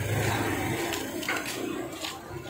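Indistinct background noise of a busy traditional market: a low hum with faint distant voices and a small click, and no single clear sound standing out.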